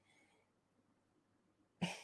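Mostly quiet: a faint sniff at a glass of beer just after the start, then a sudden short throat sound near the end.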